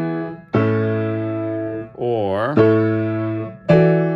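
Baldwin piano playing block chords of a I–V–I progression, with the fifth of the key in the bass. Three chords are struck, about half a second in, about two and a half seconds in and near the end, each ringing and dying away.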